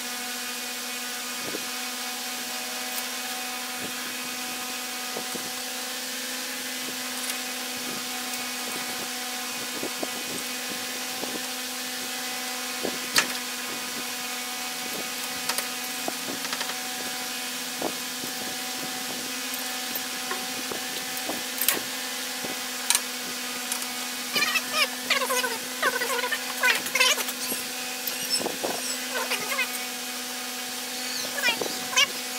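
Steel jaws of a lathe's three-jaw chuck being taken out and refitted by hand: scattered sharp metal clicks, then a busy run of ringing clinks near the end. Under them runs a steady machine hum.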